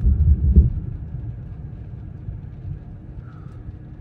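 A long roll of thunder, a low rumble loudest in the first second and then dying away, heard from inside a car.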